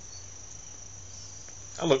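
A steady high-pitched tone over faint hiss and a low hum, unchanging throughout. A man's voice starts near the end.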